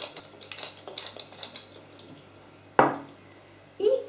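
A few faint ticks from a hand pepper mill, then one sharp knock with a short ring as the mill is set down on the table.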